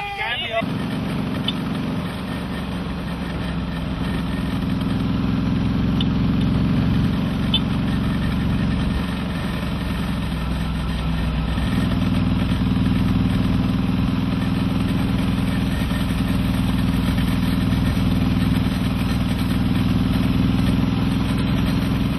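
A vehicle engine running steadily at a low, even hum that gets a little louder about halfway through.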